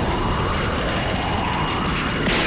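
Anime battle sound effect of destruction: a steady, loud, dense rumble of rushing force and crumbling stone, with no separate impacts.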